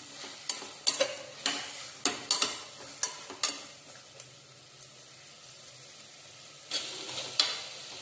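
A spoon stirring chopped potatoes, tomatoes and peas in a stainless steel pressure cooker pot. It gives a string of sharp scrapes and knocks for the first three and a half seconds, a quieter stretch, then more strokes near the end.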